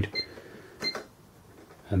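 Sam4S NR-510 cash register keys pressed, each press answered by a short high beep from the register; two beeps about 0.7 s apart.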